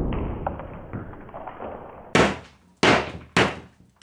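Slowed-down sound of a hammer smashing through a drywall panel: a long, muffled crumbling rumble that fades away. Three short, sharp thuds follow in the second half, about half a second apart.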